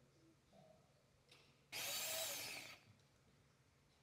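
Countertop blender motor run in a burst of about a second, starting just before the middle, with a whine that falls in pitch while it runs.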